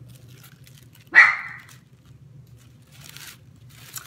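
A dog barks once, short and loud, about a second in, over faint rustling of tissue paper being handled.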